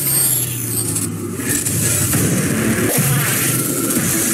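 Sound effect in a radio station promo: a dense, steady, engine-like rumble with a low hum during the first second or so.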